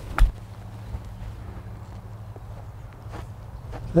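A golf iron strikes the ball off the turf with a single sharp click about a quarter of a second in, the loudest sound here, over a low steady background hum.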